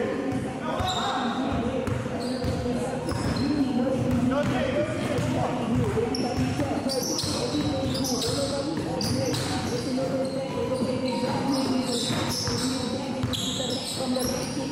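A basketball bouncing on a hardwood gym floor during a pickup game, with players' voices echoing in the large hall.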